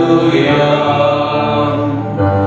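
Sung church music: a voice chanting long, held notes, with music around it.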